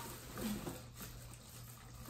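Faint handling noise from a plastic cat-litter disposal pail and its plastic bag liner being worked by hand, with a brief soft sound about half a second in, over a low steady hum.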